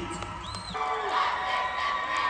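Arena crowd cheering and shouting, with one high-pitched whoop about half a second in.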